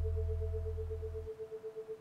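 A steady 432 Hz pure tone pulsing about twelve times a second: an isochronic beat for brainwave entrainment. Under it, a low drone fades away a little over a second in.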